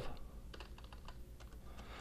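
Computer keyboard being typed on: a few faint, irregular key clicks as binary digits are entered.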